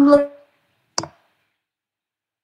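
A short spoken syllable, then a single sharp click about a second in, followed by silence.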